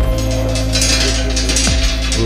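Electronic background music: a deep sustained bass under long steady synth notes, with a hissing swell in the middle.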